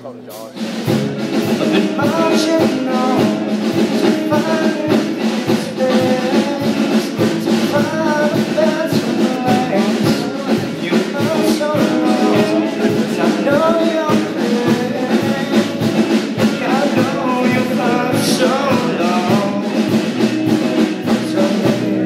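Live rock band playing: drum kit, electric guitars and bass come in together about a second in and carry on with a steady beat.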